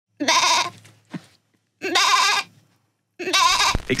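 Three short bleat-like vocal calls, each about half a second long with a wavering pitch, and a brief fainter call between the first two.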